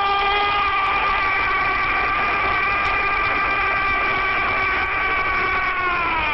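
A Spanish-language football commentator's long, held "gooool" goal call: one sustained shouted note that sags slightly in pitch, over the din of a stadium crowd.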